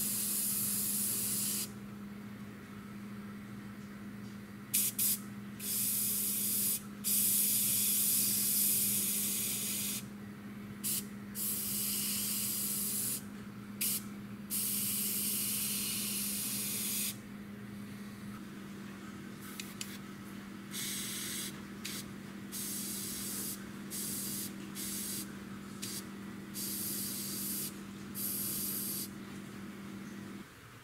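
Gravity-feed airbrush spraying paint in on-and-off bursts of hissing air: several sprays of a second or more in the first half, then many short puffs. Under it, the air compressor hums steadily.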